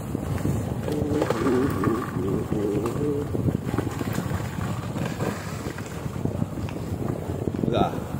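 Steady low wind rumble on the microphone, with a person's voice talking for about two seconds early on.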